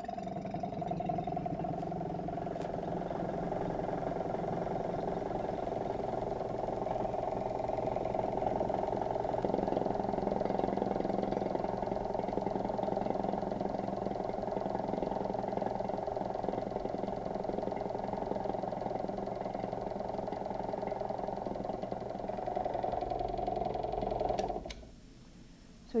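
Electric vacuum pump running with a steady hum as it draws the air out of a sealed container, lowering the pressure until room-temperature water boils. It cuts off suddenly about a second before the end.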